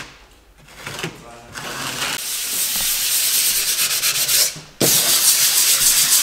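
Hand-sanding dried filler on a plasterboard wall: abrasive rubbing that builds from about two seconds in, then turns louder, with rapid back-and-forth strokes, after an abrupt jump near the end.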